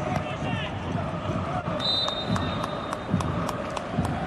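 On-field sound from a soccer pitch in a near-empty stadium: distant players' shouts, several sharp knocks, and a steady high whistle lasting about a second and a half near the middle.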